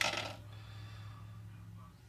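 A light metallic clink from a metal alligator-clip holder being handled, ringing briefly, over a steady low hum that drops away near the end.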